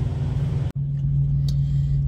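Semi truck's diesel engine idling with a low, steady rumble. The sound breaks off briefly about three-quarters of a second in and resumes as a steadier low hum, as heard inside the cab.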